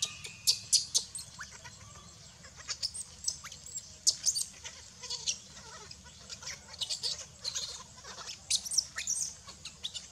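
Newborn baby macaque crying in short, high-pitched squeals and shrieks, repeated in clusters, while being dragged over dry leaves by its mother.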